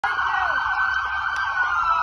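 Emergency-vehicle sirens of a passing police, fire and ambulance procession, several wailing over one another, their pitch sliding slowly downward, over a low engine rumble.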